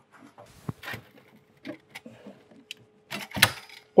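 Light clicks, knocks and rustling as a small model airplane is picked up off a shelf and handled, with a louder rustle near the end.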